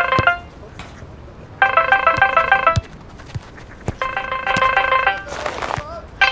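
Mobile phone ringtone for an incoming call: a short melodic phrase about a second long, repeating every two and a half seconds or so. There is a brief rush of noise near the end.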